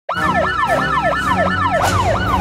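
A desk phone ringing, given as a siren-like electronic sound effect: a quick whoop that falls in pitch, repeated about three times a second over a low steady drone.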